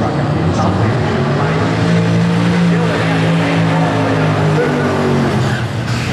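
Twin-turbo Ford Cortina drag car's engine revving up during a burnout, its rear tyres spinning in smoke. The engine note climbs, is held high, then drops back near the end.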